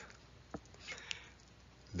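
Quiet room tone between spoken sentences, with a faint click about half a second in and a faint short sound near one second.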